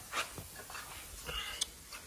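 Faint handling noise: a short soft puff near the start, a light click, then a brief rustle ending in a click as a cut-out body piece is handled.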